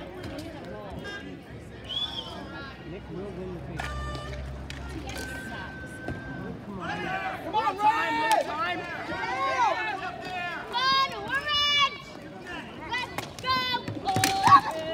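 Many voices shouting excitedly over one another, swelling about halfway through, with a few sharp clacks of ball-hockey sticks and ball.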